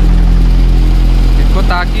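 Concrete vibrator engines running with a steady low hum, driving the needle vibrator and the formwork plate vibrators that compact fresh concrete in a girder form so that no honeycombing is left.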